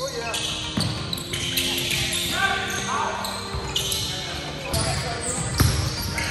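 Basketball bouncing on a hardwood gym floor during a pickup game, with a couple of hard bounces, one about a second in and one near the end.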